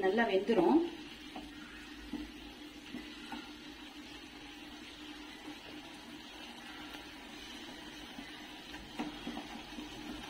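Wooden spatula stirring grated beetroot in a pan, with a faint, steady simmer of the cooking liquid beneath.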